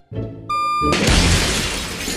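Cartoon sound effect of a truck's reversing beeper, one high electronic beep about every second, ending in a loud crash with a shattering, breaking noise about a second in.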